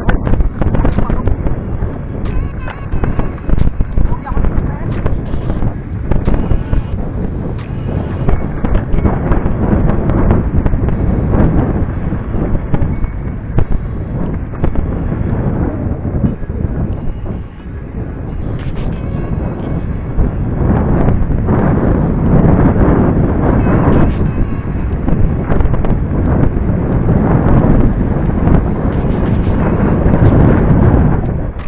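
Mountain bike clattering and rattling over a rocky, rutted dirt trail, with wind buffeting the microphone: a dense rumble full of sharp clicks and knocks that grows louder in the second half.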